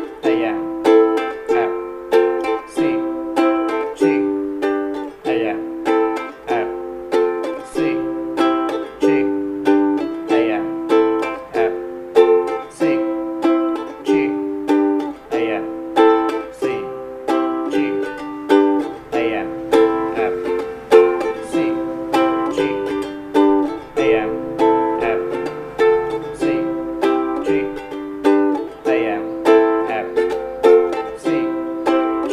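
Ukulele strummed in a steady rhythm of about two strokes a second, repeating an F, C, G, Am chord progression.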